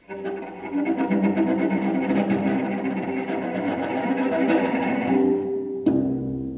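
A solo low string instrument played very loudly and freely: a dense, fast rattling scrape over sustained pitches that slide up and back down. The scraping thins out near the end, and a single sharp click follows, leaving a ringing decay.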